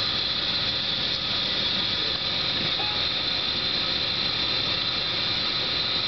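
Steady mechanical hiss and hum of running lab machinery, even throughout, with no distinct knocks or clicks.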